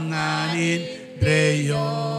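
Voices singing a slow hymn in long held notes. One note breaks off about a second in and the next is held on.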